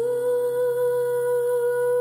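A singing voice holding one long wordless note, steady with a slight waver, over low sustained accompaniment in a folk-pop song.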